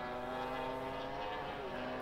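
1000 cc racing motorcycle engines at high revs, heard from trackside as a steady engine note that dips slightly in pitch.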